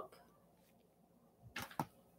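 A quiet room, then near the end two brief paper sounds from a glossy magazine being handled and put aside.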